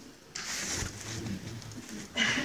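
Soft laughter: a breathy exhalation with a low chuckling hum, after a joke.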